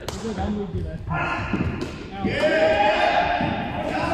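Indoor cricket: a hard ball pitching and being struck on a sports hall floor gives a couple of sharp knocks about two seconds in. Players' long, drawn-out shouts start about a second in and carry on past them.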